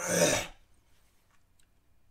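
A man clearing his throat once: a short harsh burst of about half a second right at the start.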